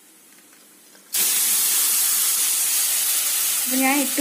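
Cooked green peas and their cooking liquid tipped into a hot pan of fried masala, setting off a loud, steady sizzling hiss that starts suddenly about a second in.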